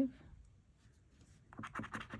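Coin scratching the coating off a scratch-off lottery ticket in a quick run of short strokes, starting about one and a half seconds in.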